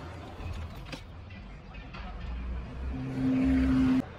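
Low rumble with a steady low-pitched hum that comes in about three seconds in, becomes the loudest sound, and cuts off abruptly.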